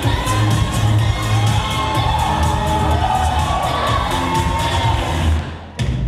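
Hip-hop dance music with a heavy bass beat, with an audience cheering and shouting over it. The music drops out for a moment near the end, then comes back.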